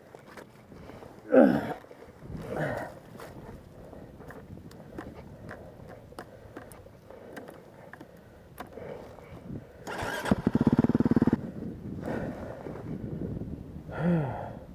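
Two short grunts of effort and scattered knocks as a Husqvarna dirt bike is hauled upright out of mud, then, about ten seconds in, the bike's engine starts with a loud burst of rapid firing that lasts just over a second before dropping back.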